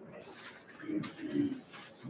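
Soft, low murmured voices, a few short mumbles about half a second apart.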